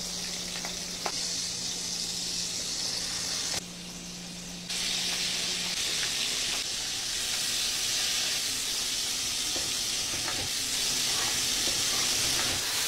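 Slipper lobster halves and cherry tomatoes sizzling in hot oil in an aluminium frying pan, a loud steady sizzle that dips for about a second a little before the midpoint and then comes back stronger. A few light taps of a fork on the pan.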